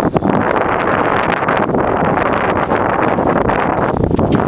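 Wind on the camera's microphone: a loud, steady rushing noise.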